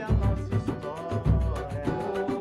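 Pagode samba group playing live: a low drum stroke about every second and a quarter under fast, steady percussion, with a pitched melody line over it.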